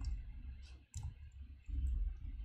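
Computer keyboard keys clicking: a handful of separate keystrokes, each with a low thump, as a short word of code is typed.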